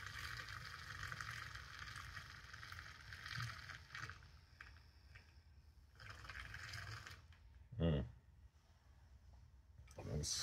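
Handheld battery milk frother whirring in a glass of coffee, its whisk churning the liquid with a faint swishing hiss. It runs for about four seconds, stops, and runs again for about a second near the middle.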